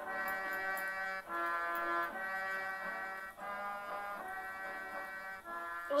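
Background music: sustained chords that change about once a second.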